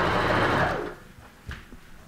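Janome Sewist sewing machine running a short burst of straight stay stitching through a gathered frill, stopping about a second in. A light click follows shortly after.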